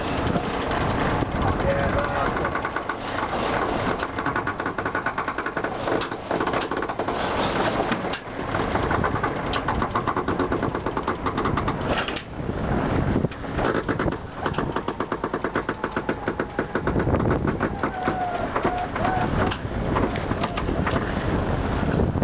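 Indistinct talking over the steady noise of a sailboat under way.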